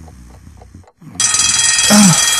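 Clock ticking about four times a second over a low drone, then after a brief gap an alarm clock bell starts ringing loudly just over a second in.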